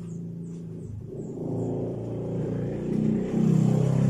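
A motor vehicle's engine passing close by, its low drone building up over a few seconds to its loudest near the end.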